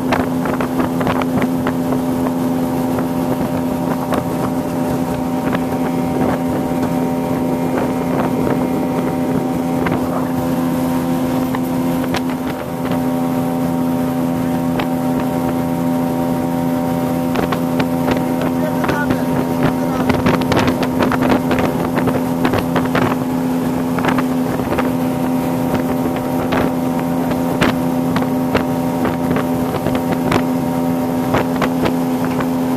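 Motorboat engine running steadily at cruising speed: a constant drone with a strong low hum, joined by frequent irregular splashes of water against the hull and wind on the microphone.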